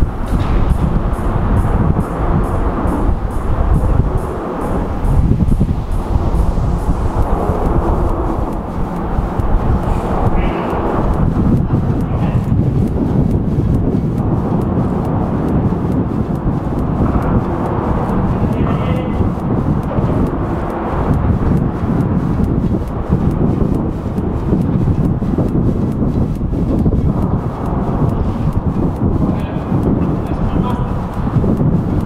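Wind buffeting the microphone: a loud, steady low rumble that rises and falls in gusts.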